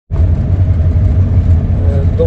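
Steady low rumble of a moving vehicle heard from inside its cabin: engine and road noise.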